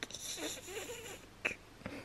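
A person's breathy, wavering vocal sound lasting about a second, then two sharp light clicks near the end.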